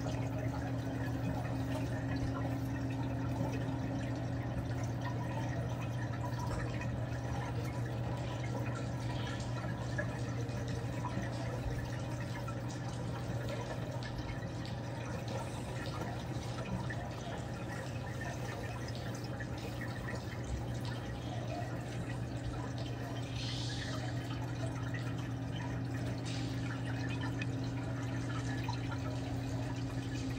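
Running water of a reef aquarium's circulation: a steady trickling, splashing wash of water with faint drips, over a steady low hum.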